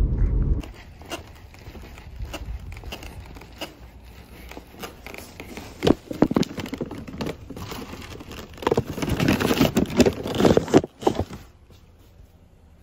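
Paper takeout bag crinkling and rustling as it is carried and set down, with louder handling about six seconds in and again from about nine to eleven seconds. Car road noise cuts off just after the start.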